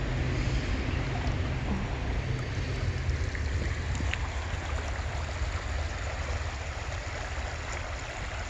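Low, steady rumble of a Kansas City Southern train slowly fading away after its last car has passed, over the rush of a shallow creek.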